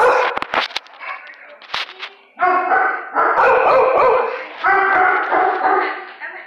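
Dog barking and yelping in loud runs from about two and a half seconds in, after a few sharp clatters in the first two seconds.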